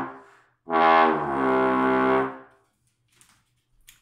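Trombone playing long, sustained notes: one note dies away at the start, then a new note about half a second in drops in pitch partway through and ends about two and a half seconds in. This is false-tone practice, lipping a note down below its slide position without moving the slide.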